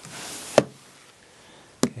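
A brief soft rustle, then two sharp taps about a second and a quarter apart.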